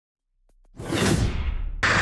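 Whoosh sound effect for an animated logo intro: a rushing swoosh over a deep rumble, its hiss sinking in pitch, which cuts off suddenly near the end.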